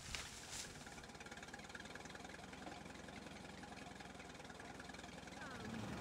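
Tractor engine idling faintly with a steady, even pulse.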